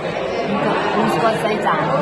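Speech: a woman talking over the chatter of other diners in a large room.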